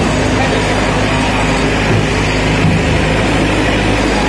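An engine running steadily, a continuous low hum.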